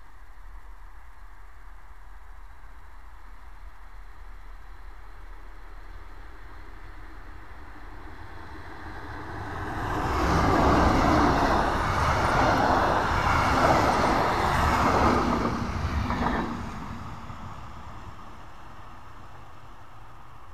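MÁV class V43 ('Szili') electric locomotive hauling an Intercity train passing close by: the rush of wheels on rails swells about nine seconds in, stays loud for some six seconds as the locomotive and coaches go by, then fades away.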